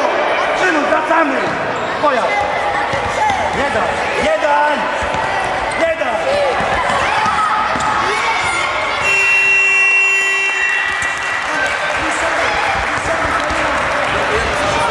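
Children's voices shouting and calling in an echoing sports hall, with thuds of a futsal ball on the hard floor. About nine seconds in, a steady tone sounds for roughly two seconds.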